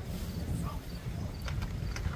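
Football pads and helmets knocking as players collide at the snap: a few sharp clacks about a second and a half in, over a steady low rumble of wind on the microphone.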